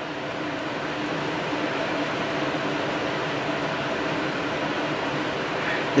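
A steady, even hiss of machine noise with a faint hum under it, unchanging throughout, with no strokes, clicks or knocks.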